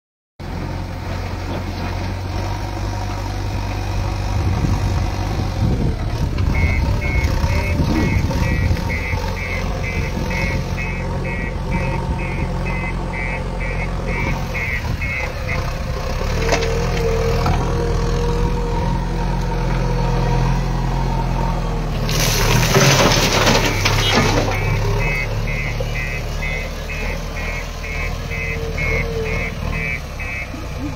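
JCB backhoe loader's diesel engine running steadily. A regular high beeping sounds for several seconds at a time, twice, and a loud rushing burst comes about twenty-two seconds in.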